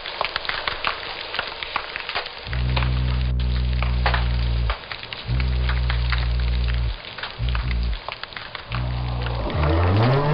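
Snapping shrimp crackling, a dense spatter of clicks. From a few seconds in, low, pitched fish hums from a sculpin come in several spells of one to two seconds over the continuing crackle. Just before the end a low call begins that rises in pitch, the start of a North Atlantic right whale up call.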